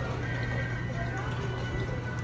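Steady low machinery hum inside a boat dark ride with its show music switched off, a faint steady high tone above it, and passengers' voices and phone-played audio faintly mixed in.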